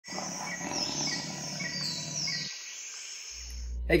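Birds chirping, with repeated falling high chirps over a steady hiss, stopping about two and a half seconds in. A low steady hum follows just before a man's voice begins.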